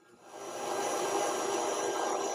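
KitchenAid Artisan stand mixer driving its meat-grinder attachment used as a sausage stuffer, pushing ground meat filling out through the stuffing tube into a manicotti shell. The motor comes up over the first second, then runs steadily at a high speed setting, speed six.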